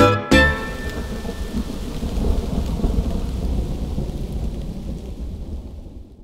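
A charanga band's last staccato hit just after the start, then recorded rain with a low rumble of thunder that slowly fades out near the end.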